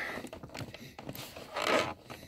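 Cigarette lighter socket in a BMW F30's centre-console trim wiggled by hand: small plastic-and-metal clicks and scrapes, then a longer scrape about one and a half seconds in.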